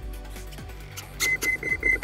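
Soft background music. About a second in, a quick run of short high electronic beeps at one pitch starts, with a few light handling clicks.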